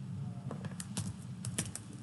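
Typing on a computer keyboard: a quick run of irregular key clicks.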